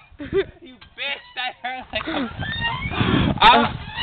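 Several young people laughing hard, with no clear words, loudest about three seconds in.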